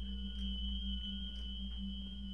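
Eerie sustained drone of steady tones: a thin high tone held over a low hum that pulses slowly.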